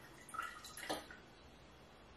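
Faint drips and a short trickle of braggot running from the end of a siphon tube into a small glass, with a light tap near one second in.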